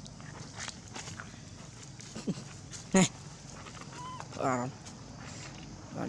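Long-tailed macaques calling: one short, sharp call about three seconds in, then a wavering cry a little over a second later, with quiet rustling between.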